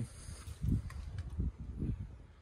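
Several soft, muffled low thumps with faint rustling: footsteps and handling noise from a handheld camera being carried.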